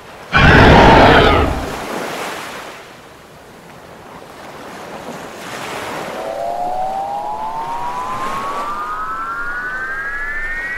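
A loud whoosh about half a second in, fading over a couple of seconds into a softer washing noise, then from about six seconds a single electronic tone rising slowly and steadily in pitch.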